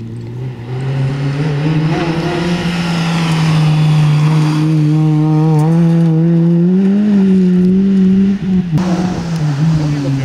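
Peugeot 206 rally car's engine held at high revs on a rally stage, growing louder as the car nears and passes. The pitch climbs about seven seconds in, and the engine drops away briefly at about eight and a half seconds before it picks up again.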